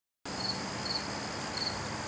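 High insect chirping, short even chirps at about two a second over a faint steady hum. It cuts in abruptly out of dead silence about a quarter second in.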